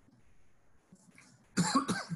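A person coughing: a short burst of two or three coughs about one and a half seconds in.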